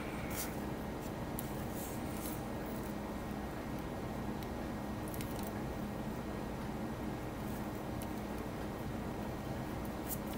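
Quiet room tone with a steady low hum, and a few faint small ticks and rustles of masking tape being lifted and pressed back down on a plastic model deck with a pointed tool and fingertips.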